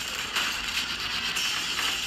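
Continuous automatic gunfire from a film's shootout scene, heard through a TV speaker, with most of its sound in the upper middle and little bass.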